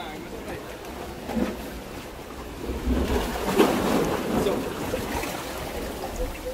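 Sea surf washing against shoreline rocks, with wind buffeting the microphone and swelling about halfway through.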